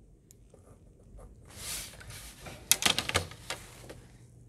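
Pencil drawing a line along a plastic set square on paper: a scratchy stroke about halfway through, then a quick run of sharp clicks and taps as pencil and set square are handled.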